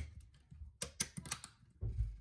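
Plastic clicks and taps from handling a self-contained electrical outlet and its snap-on cover: a sharp click at the start, a quick run of clicks about a second in, and a dull knock near the end.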